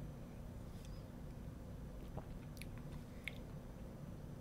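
Faint mouth sounds of a person sipping whisky from a tasting glass and swallowing: a few small clicks, the loudest about three seconds in, over a steady low hum.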